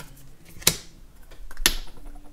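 Two short, sharp scraping clicks about a second apart, the second a little longer: nail-stamping tools on a metal stamping plate, a scraper card dragged across the plate and a clear jelly stamper pressed onto it to pick up the design.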